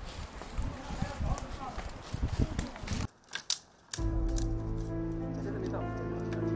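Dead branches rustling, cracking and snapping as firewood is gathered and broken by hand. The sound cuts off abruptly about three seconds in. After a second's hush with a couple of clicks, music with sustained notes begins.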